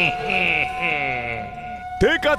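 A cartoon villain's voice in a drawn-out gloating laugh that falls in pitch, over a steady held tone from the soundtrack.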